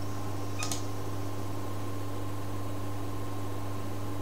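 A computer mouse clicking twice in quick succession, a little over half a second in, over a steady low electrical hum.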